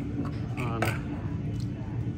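Steady low hum of an electric potter's wheel running, with a short vocal sound from a man about three quarters of a second in.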